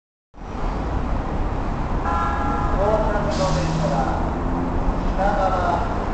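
Keikyu 1000-series electric train sounding its warning horn, a chord of steady tones lasting about a second, beginning about two seconds in, over the low rumble of the approaching train. A short hiss follows right after the horn.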